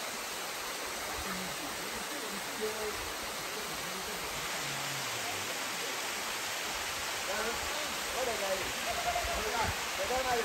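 A small waterfall cascading over rock ledges, making a steady rushing hiss. Faint voices rise over it in the last few seconds.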